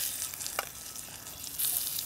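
Burger patties searing in a hot cast-iron skillet over a charcoal grill: a steady sizzle of fat, with a light tap about half a second in and a louder burst of sizzle near the end as another patty goes into the pan.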